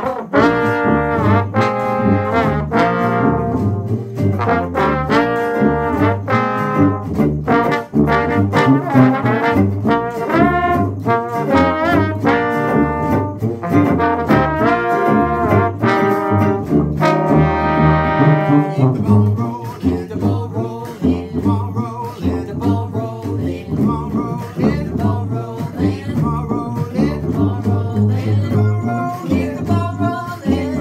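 Live brass-and-guitar band playing an instrumental break: trombone and trumpet carry the tune over sousaphone bass and strummed archtop guitar. About nineteen seconds in the horns drop out, leaving guitar and sousaphone.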